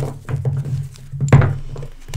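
Tarot cards being handled, with a few soft taps and knocks, the loudest about a second and a half in, over a steady low hum.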